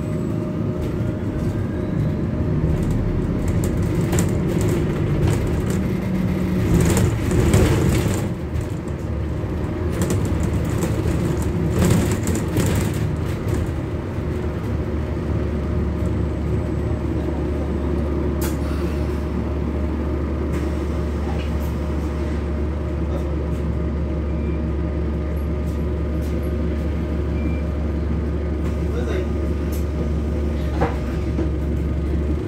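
Cabin sound of a London double-decker bus: the drivetrain hums and shifts in pitch while moving, with loud rattles about seven and twelve seconds in. From about fifteen seconds on, the sound settles into a steady low drone.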